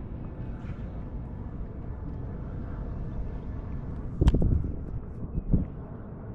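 Outdoor wind rumble on the microphone over shallow water, with a single sharp knock about four seconds in and a duller thump near the end.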